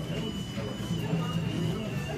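Indistinct voices and general background noise of a busy pool hall, with a faint steady high-pitched tone running through it.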